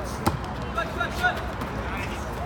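A single sharp slap of a hand striking a volleyball, followed by players' shouts.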